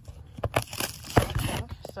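A cardboard box being worked open by hand: scraping and crinkling of cardboard with several sharp clicks.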